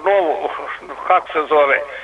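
Speech only: a male caller talking over a telephone line.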